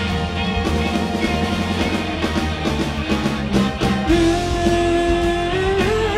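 A live rock band playing: electric guitars, bass and drums, with a long held note coming in about four seconds in.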